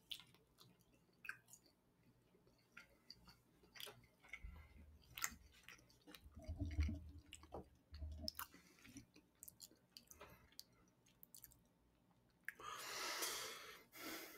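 Faint chewing of a soft ham and egg bun, with small wet mouth clicks and a few soft low thumps in the middle. A short breathy noise comes near the end.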